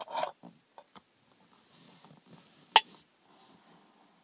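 Faint rustling of a person shifting about inside a parked car's cabin, with one sharp click a little under three seconds in.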